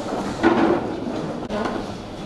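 Classroom bustle: wooden desks and chairs knocking and scraping as students move about, loudest about half a second in.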